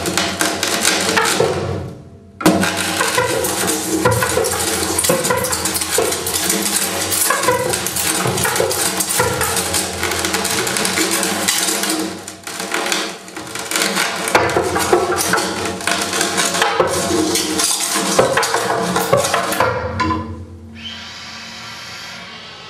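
Loud, dense noise music: a harsh, clattering texture of rapid clicks and crackle that cuts out briefly about two seconds in, then runs on. Near the end it gives way to a quieter, steady held tone with several pitches.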